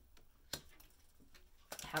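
A tarot card set down on a paper-covered table, giving one light click about half a second in, with a few fainter ticks after it. A woman starts speaking near the end.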